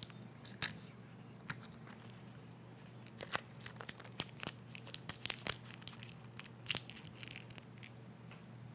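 Packing peanuts being fiddled with and pulled apart in the hands: a run of irregular small crackles and clicks, thickest about three to seven seconds in.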